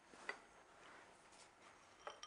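Near silence: faint room tone, with one soft tick about a third of a second in.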